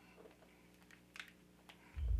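Near silence with a few faint, short computer-keyboard clicks, the loudest about a second in.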